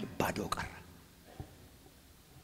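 A man speaking into a microphone, his words ending within the first second. Then quiet room tone with one soft tap about halfway through.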